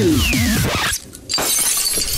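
Party music with a descending slide breaks off about a second in. After a short gap comes a cartoon crash sound effect with a shattering, glassy rattle.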